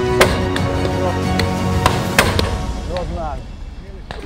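Several shotgun shots over background music: a sharp one just after the start, then a close pair about two seconds in, with fainter reports between. The music fades out near the end.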